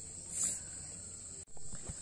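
Steady high-pitched drone of insects in a grassy field. A brief rustle comes about half a second in, and a few faint knocks follow a sudden dip in the sound about a second and a half in.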